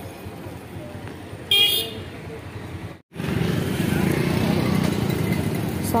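Engine and road noise of a two-wheeler riding through street traffic, with one short vehicle horn toot about a second and a half in. The sound drops out for an instant near the middle, then the traffic noise comes back louder.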